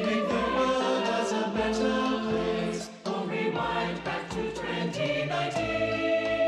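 Mixed-voice youth choir singing held chords, layered from separately recorded voices into one mix. The sound breaks briefly about halfway through before the next phrase.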